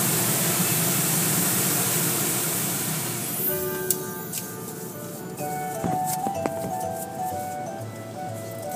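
Steady loud hiss of high-pressure water spray in an automatic car wash tunnel, which fades out about three and a half seconds in. A simple electronic melody of held, stepping notes then plays, with a few sharp clicks.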